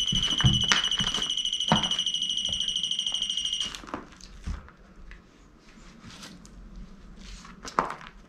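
A high, rapidly pulsing electronic alarm tone from a ghost-hunting gadget, cut off suddenly about halfway through. A couple of sharp knocks sound over it early on. After it stops there are faint clicks and rustles, and another sharp knock near the end.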